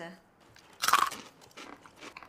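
A hard, dry rusk (paximadi) being bitten and crunched, with one loud crunch about a second in and a few faint crunching clicks after it.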